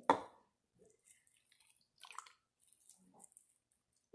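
Faint, scattered wet squishing from a small plastic-wrap bundle of juice being squeezed toward the mouth. The clearest squish comes about two seconds in.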